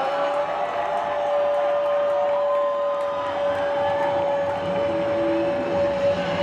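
Football stadium crowd noise during a goal celebration, with one long steady high note sounding over the crowd and a shorter higher note joining briefly a couple of seconds in.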